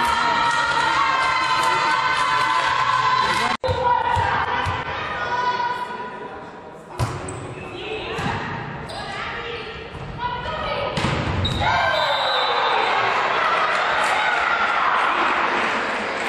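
Volleyball players' voices cheering together, echoing in a sports hall; after a sudden cut, a rally with sharp hits of the ball about 7 and 11 seconds in, among shouts from players and spectators.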